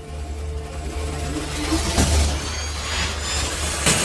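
Cinematic logo-intro sound design: a low drone under whooshing swells that build steadily louder, with sharp hits about two seconds in and just before the end.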